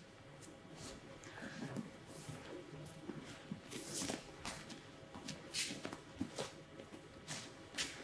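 Faint rustling of heavy cotton judo gis and soft bare footsteps shuffling on foam tatami mats as two judoka get up off the mat and step back into position, with a few light scattered taps.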